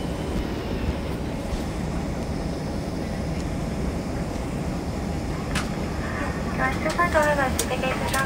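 Steady low rumble of an airliner's cabin after landing, the engines and air system running. A voice starts talking near the end.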